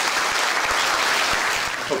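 Audience applauding in a meeting room, the clapping dying away near the end.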